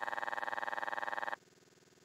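A steady electronic tone with a fast flutter, cutting off suddenly about a second and a half in and leaving near silence.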